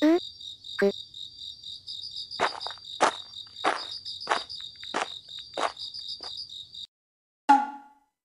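Night insect chorus of crickets trilling steadily, with a louder chirp repeating a little under twice a second through the middle. The chorus cuts off about a second before the end, and a short sound follows. A brief groan is heard at the start.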